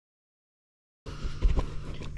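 Dead silence for about the first second, then a sudden start of low background noise with a couple of dull thumps.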